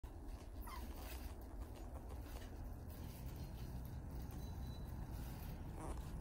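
Faint, brief puppy whimpers, one about a second in and another near the end, over a low steady rumble.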